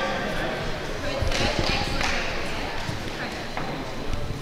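Dull thuds of bare feet and bodies on judo mats during standing grip-fighting, with a couple of sharper knocks about a second in. Voices echo in a large sports hall.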